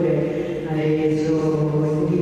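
A woman's voice amplified through a handheld microphone and PA in a reverberant hall, the echo smearing the words into a sustained, chant-like sound over a steady low drone.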